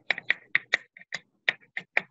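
Computer keyboard being typed on: a run of quick, irregular key clicks, about five a second.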